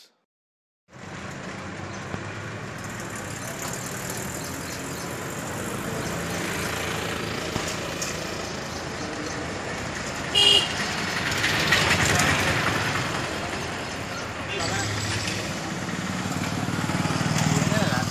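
Outdoor street ambience: steady traffic noise with indistinct voices, and a short vehicle horn toot about ten seconds in.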